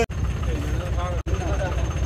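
A tractor's diesel engine idling with a steady low throb, with voices talking over it. The sound cuts out for an instant twice, just after the start and a little past halfway.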